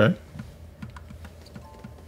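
Quick run of faint, evenly spaced light ticks, about four a second, over a few faint steady tones.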